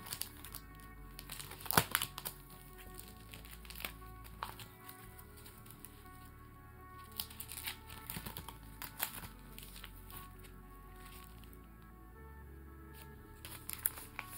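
Vintage Barbie trading cards being handled and sorted through by hand, giving irregular light clicks and rustles, the sharpest about two seconds in, over soft background music.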